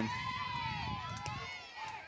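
Several distant voices calling out at once, drawn-out shouts rising and falling in pitch: softball players' chatter and cheering from the field and dugout. They fade toward the end.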